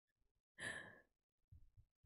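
A woman's single short, breathy exhale of laughter about half a second in, amid otherwise near silence.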